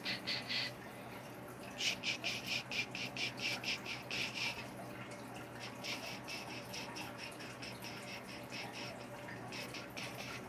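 Wood-burning pen tip scratching across a wood panel in rapid short strokes, about seven a second, in runs of one to three seconds with brief pauses, over a faint steady electrical hum.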